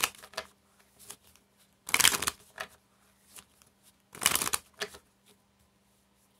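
A deck of Spanish playing cards being shuffled by hand: three short bursts of shuffling about two seconds apart, with light card clicks in between.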